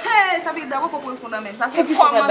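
Speech: women talking animatedly, their voices rising and falling in pitch.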